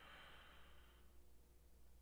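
Near silence, with a faint breath let out near the microphone during the first second or so, then fading away, over a low steady hum.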